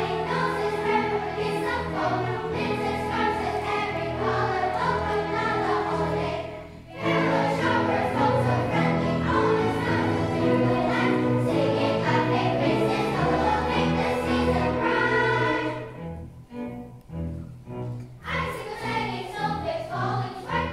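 Children's choir singing with a string orchestra accompanying. The music breaks off briefly about seven seconds in, and near the end it drops quiet for about two seconds to a few short separate notes before the full choir and orchestra return.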